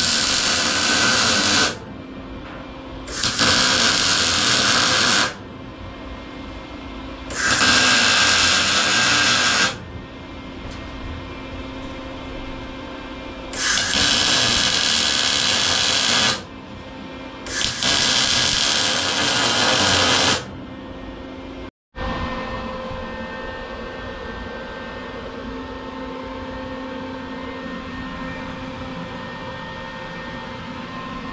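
MIG welder arc crackling and hissing in five runs of about two seconds each, a few seconds apart, as steel sheet is welded to a steel frame. After a short break near the end, a steady hum carries on.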